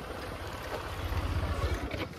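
Motorcycle engine running low and steady as the bike is eased into a parking spot, its low rumble growing slightly louder toward the end.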